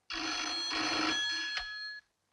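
Vintage cradle telephone's bell ringing in one continuous ring, with a click shortly before it stops abruptly near the end as the receiver is lifted.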